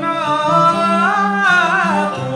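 Cantonese opera singing: one voice drawing out a long sung syllable, its pitch rising about halfway through and falling again near the end.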